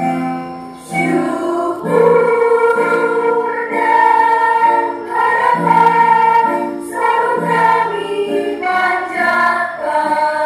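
Mixed choir singing a slow Indonesian university hymn in long held notes over keyboard chords; the voices come in strongly about two seconds in.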